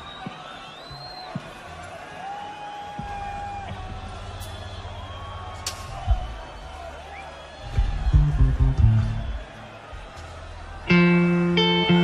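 Live rock band between songs, the crowd whistling faintly, while soft low bass-guitar notes are played and turn louder for a moment past the middle. Near the end a loud, sustained amplified guitar chord suddenly rings out.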